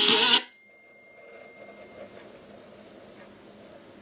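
Music playing loudly from an Amazon Basics portable CD stereo at maximum volume, stopping abruptly under half a second in. After that only a faint low background noise remains.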